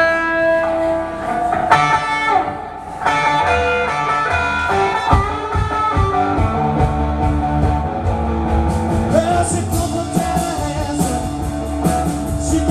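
Live blues-rock band starting a rock and roll song on electric guitar, bass and drums. A guitar line plays alone at first, and the bass and drums come in about three seconds in.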